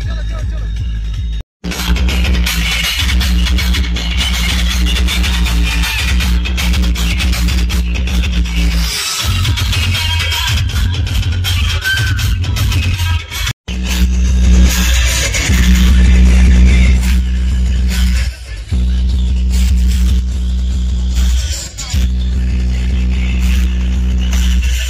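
Loud DJ dance music with very heavy, steady bass, played through a truck-mounted stack of large DJ speaker cabinets. The sound cuts out briefly twice, about a second and a half in and again past the middle.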